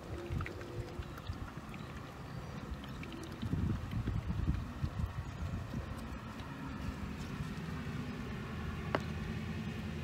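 Low outdoor rumble with a steady motor hum setting in about two-thirds of the way through, like a vehicle engine running in the distance. A single small click comes near the end.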